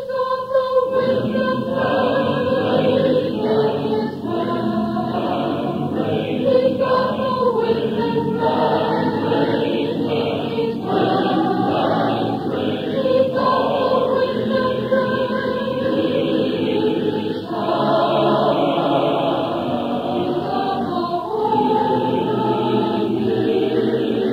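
Church adult choir singing a sacred song, with long held notes that move from chord to chord.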